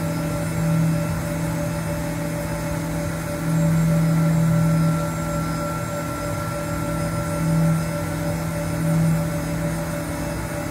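CNC vertical milling machine cutting a metal block with an end mill under flood coolant: a steady spindle and cutting tone with coolant spray hiss. It swells louder briefly about a second in, for over a second midway, and twice near the end.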